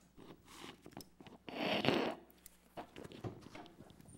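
Paper ballot slips being handled and rustled near a microphone, with one louder crinkling rustle about halfway through.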